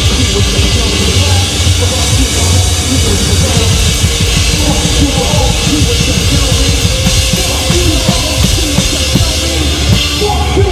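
A drum kit played hard and fast, heard close up, with dense drum and cymbal hits over a steady bass-drum pulse. It is part of a loud live band performance.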